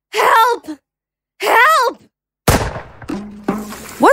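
Two short, high vocal sounds from a woman, then a single rifle shot about two and a half seconds in: a sharp crack with a fading echo. The shot is from a Winchester lever-action rifle.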